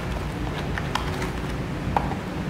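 A few light taps and rustles of small cardboard hearing-aid boxes being handled and set down on a cloth-covered table, over a steady low background rumble.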